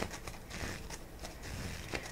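A deck of tarot cards shuffled by hand: faint card-on-card rustling with a few light ticks.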